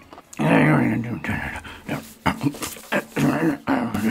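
A man's wordless vocal sounds in several bursts, pitch sliding up and down, with a few sharp mouth clicks between them.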